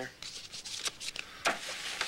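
Light rustling and handling sounds, with a sharp tap about one and a half seconds in.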